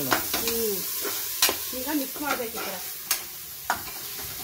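Ginger-garlic paste sizzling in hot oil in an aluminium pressure cooker while a metal spatula stirs it. The spatula clinks against the pot in sharp knocks every second or so.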